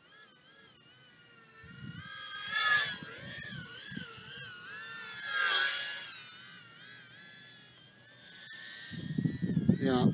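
Brushless motors of a 110 mm micro FPV racing quadcopter whining as it flies, the pitch wavering up and down with the throttle. It swells louder twice, about three and five and a half seconds in, the second time dipping and then rising in pitch as it passes close.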